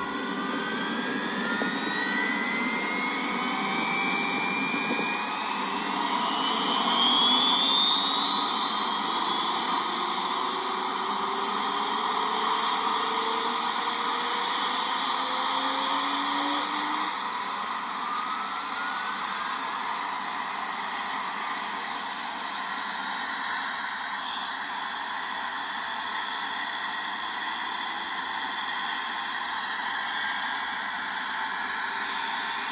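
Helicopter turbine engines spooling up: several whines rise steadily in pitch over about the first ten seconds over a rising rush of noise, then hold as a steady high whine and rush.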